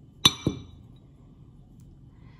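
Porcelain Turkish coffee cup clinking twice against its porcelain saucer as the upturned cup is lifted off. The first clink is the louder, and both ring briefly.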